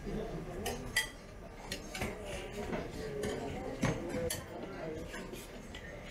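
Dishes and cutlery clinking, with a few sharp clinks about a second in and around four seconds in, over indistinct background voices.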